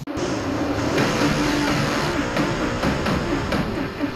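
Several race car engines running and revving, their pitches wavering up and down, with music underneath.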